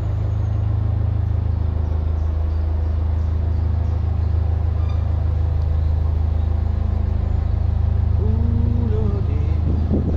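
Narrowboat's inboard diesel engine running steadily at cruising speed, a constant low rumble.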